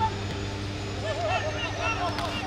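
Short shouted calls from voices across a football ground, coming thickest in the second half, over a steady low hum.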